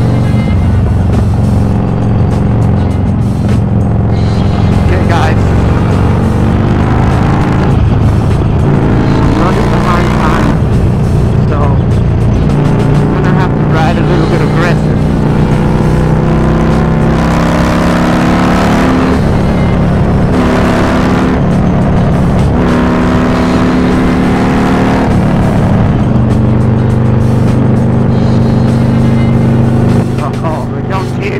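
Harley-Davidson Iron 1200 Sportster's 1200 cc V-twin running through a Cobra El Diablo 2-into-1 exhaust at highway cruising speed. Its note holds steady for several seconds at a time and shifts in pitch with the throttle.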